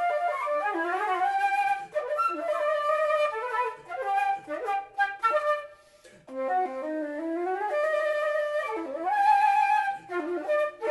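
Solo flute playing a slow melody in the manner of a shakuhachi, with frequent pitch bends and breathy tone. The line breaks off briefly about six seconds in, then resumes and ends with a rising slide.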